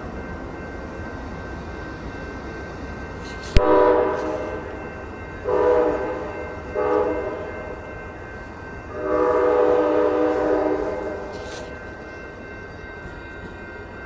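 Amtrak P42 locomotive horn sounding four blasts ahead of the passing train, long, long, short, then a longer one, the pattern sounded for a grade crossing. Underneath runs the steady rumble of the bilevel passenger cars rolling by on street track, and a sharp click comes just as the first blast begins.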